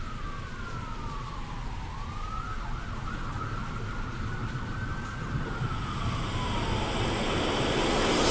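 A siren-like wailing tone that slowly falls, rises and falls again in pitch, over a low rumbling noise that grows gradually louder, as the intro to a heavy rock track.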